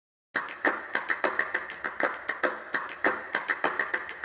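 An irregular series of sharp, short clicks or taps, about three to four a second, starting suddenly a moment in.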